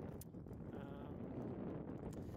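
A person's drawn-out hesitation 'um' over a steady low rumble of wind on the microphone.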